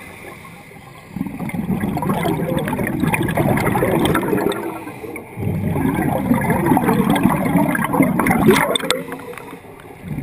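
A scuba diver's regulator exhaust bubbling underwater as the diver breathes out: two long bubbling bursts, the second following close on the first, with quieter stretches at the start and near the end.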